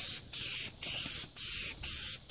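Aerosol can of black spray paint hissing in short bursts, about two a second, as a light coat goes onto the spoiler in back-and-forth passes.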